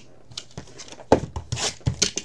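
A shrink-wrapped trading-card box being handled on the table: a few light knocks and clicks with brief plastic rustling, starting about a second in.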